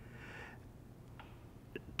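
A quiet pause in a man's speech: faint room tone with a soft breath in the first half second, then two small clicks from the mouth.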